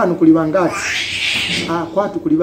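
A man's voice making short sounds that are not words, with a rising glide in pitch, then a drawn-out hiss like a long 'shhh' lasting about a second, then the voice again near the end.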